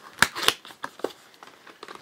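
Small cardboard SSD box being opened and its plastic tray slid out: a couple of sharp clicks early on, then lighter scattered ticks and crinkles of cardboard and plastic.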